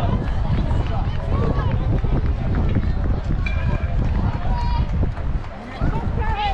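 Scattered, unintelligible calls and chatter from players and spectators at a baseball field, over a steady low rumble.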